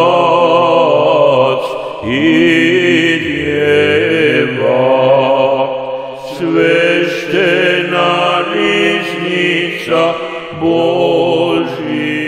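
A male voice chanting an Orthodox liturgical hymn in long held phrases over a sustained low drone. New phrases begin about 2, 6 and 10.5 seconds in, each sliding up into its first note.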